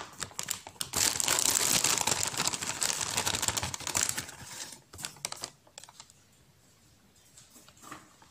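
Flour being tipped and shaken out of a small cup into a ceramic bowl: a dense crackling rustle for about three seconds, then a few light clicks before it falls quiet.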